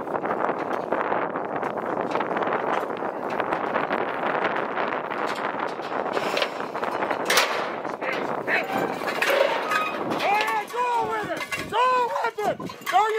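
Bull shifting in a steel bucking chute, the metal rails rattling, with a sharp clang about seven seconds in. Near the end, loud whooping and shouting break out as the bull is let out bucking.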